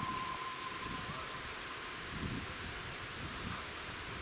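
Distant steam rack locomotive approaching over a steady outdoor hiss, its whistle holding one steady tone that fades out about a second in. Faint low rumbles follow.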